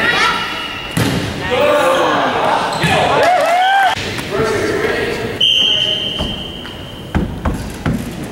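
A volleyball being struck and bouncing on a hardwood gym floor, with sharp slaps at the start and twice near the end. Young players shout and call out in high voices, and about five and a half seconds in a single steady referee's whistle blast lasts about a second and a half.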